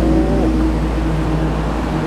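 A steady, loud, low hum like an engine running, with a few held tones over it.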